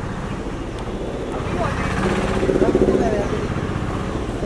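A vehicle engine running with a low, steady rumble, with several people's voices calling out over it, louder around the middle.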